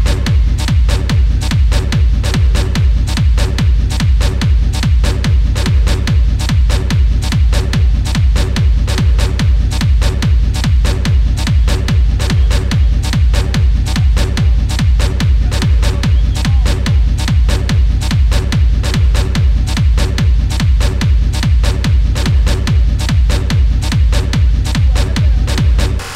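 Electronic dance music played in a DJ set: a steady four-on-the-floor kick drum at about two beats a second over heavy bass and a repeating synth line, with the beat coming in suddenly at the start.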